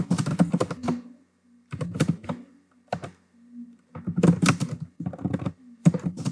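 Computer keyboard being typed on in quick bursts of keystrokes, with short pauses between the bursts.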